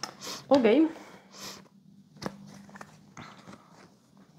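A board-game piece set down on the tabletop with a single sharp click about two seconds in, followed by a few faint taps.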